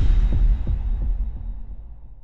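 Logo-intro sound effect: a deep bass boom hits at the start and fades steadily away.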